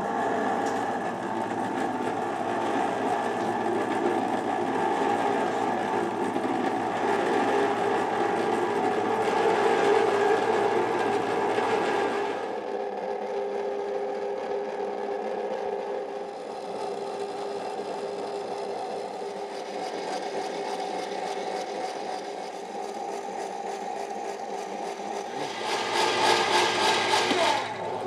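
Electric ice cream maker running, its motor turning the paddle through the sherbet mix with a steady mechanical hum. The sound changes partway through and grows louder and noisier near the end.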